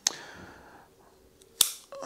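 Bonsai scissors snapping shut twice: two sharp metallic clicks about a second and a half apart, the second one louder.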